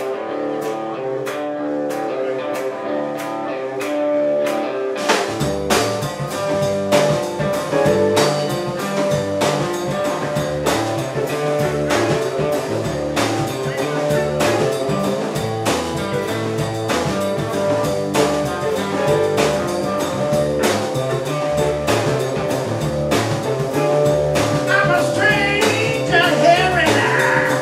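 Live electric blues band starting a tune: electric guitar over a steady ticking beat for about the first five seconds, then the drum kit and bass guitar come in and the full band plays on.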